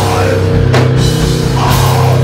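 Heavy metal band playing live: distorted electric guitar and bass hold a sustained low chord over a drum kit, with two sharp hits about a second apart.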